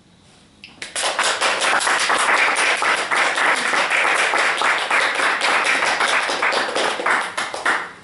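Audience applauding, with the clapping starting about a second in and dying away just before the end.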